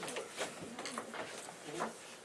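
A few faint, sharp clicks of scissors snipping thin wire, with a brief murmured voice near the end.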